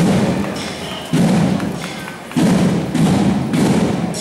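Parade drums beating a slow, heavy rhythm, a loud stroke about every second that fades before the next.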